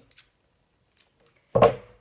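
A single sharp knock about one and a half seconds in, as a spool of green twine is set down on a white plastic craft tray. Two faint ticks of handling come before it.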